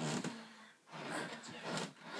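Bedding being moved about: a comforter and blankets rustling.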